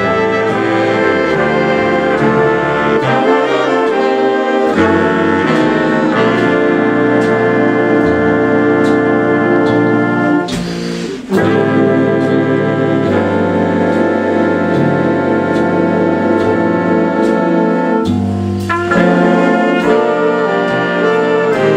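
A swing-style jazz big band playing a full ensemble passage: trumpets, trombones and saxophones in sustained chords over guitar and upright bass. The horns break off briefly about ten seconds in and again shortly before the end.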